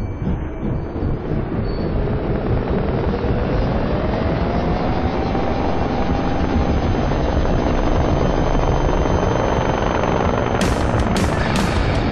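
Medical helicopter's rotor beating steadily, with a whine that rises in pitch over the first few seconds. Near the end, sharp drum and cymbal hits of rock music come in over it.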